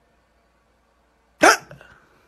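After near silence, a single sudden loud vocal yelp about one and a half seconds in. It falls in pitch and trails off quickly.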